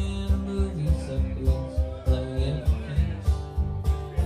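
A live country band playing a song: an upright bass plays a steady low beat about three notes a second under acoustic guitar, with a man singing.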